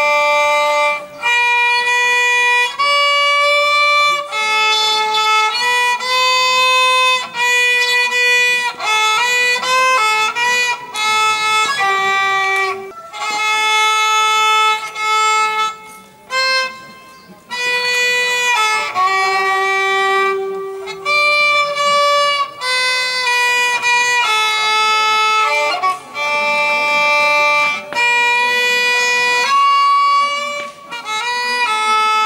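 A violin played solo: a single bowed melody of held notes, with a brief break about sixteen seconds in.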